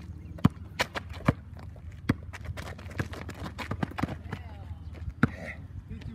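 Basketball dribbled on an outdoor asphalt court: an uneven run of sharp bounces, about two a second, mixed with sneaker footsteps.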